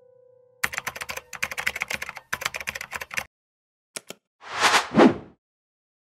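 Computer-keyboard typing sound effect: a fast run of key clicks for about two and a half seconds, then two quick clicks and a short swelling rush of noise about a second long.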